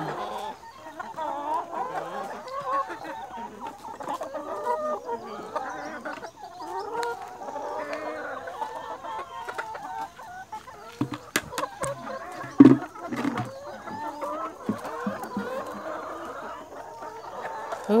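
A flock of brown laying hens clucking and calling over and over. A few sharp knocks come about two-thirds of the way through, one of them the loudest sound here.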